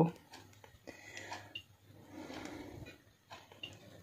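Faint kitchen handling sounds: a few light taps and clicks as a slice of radish is set on a piece of toast, with a faint low murmur in the middle.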